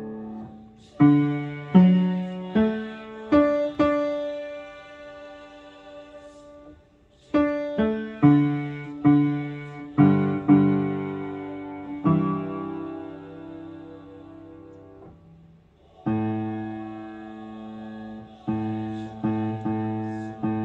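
Upright piano playing a choir's bass part at a slow pace: low notes and chords struck one after another and left to ring, with short pauses between phrases about a third and three-quarters of the way through.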